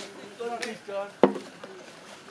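Long-handled poles knocking while rubbish is hooked out of a stream: one sharp knock a little over a second in, the loudest sound, with a lighter click at the start. A short burst of voice comes just before the knock.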